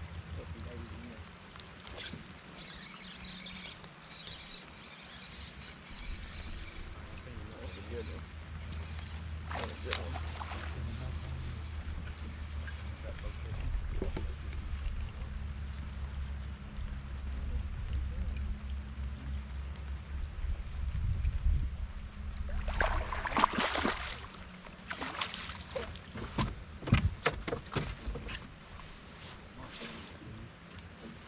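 Low, steady hum of a bass boat's electric trolling motor, running from about six seconds in until about twenty-three seconds, over a light hiss of rain on the water. Near the end come a run of sharp clicks and knocks from fishing gear being handled on the boat deck.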